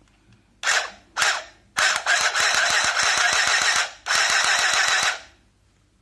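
Arricraft battery-powered handheld sewing machine stitching through fabric, its needle mechanism making a fast, even clatter. It runs in two short bursts, then about two seconds, stops briefly, and runs about a second more.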